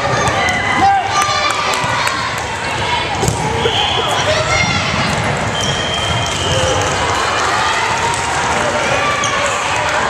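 Volleyball rally in a gymnasium: the ball is struck sharply a few times amid players and spectators calling and shouting.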